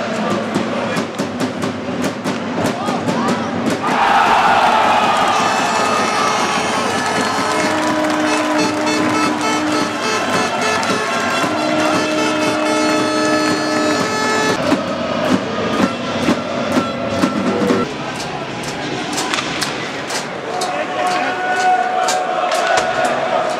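Ice hockey arena sound: sticks and skates clicking on the ice with a crowd in the stands. About four seconds in the crowd suddenly cheers loudly, and arena music with steady held notes plays over the noise for about ten seconds, typical of a goal celebration.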